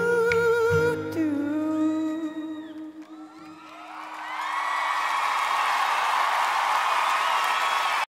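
A male singer holds the last note of the song over acoustic guitar and band, and it fades out about three seconds in. Then a large arena crowd breaks into cheering and applause, with a few whoops and whistles, building up and holding steady.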